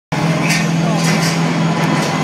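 A steady low drone over an arena PA, with crowd shouts rising above it about half a second and a second in.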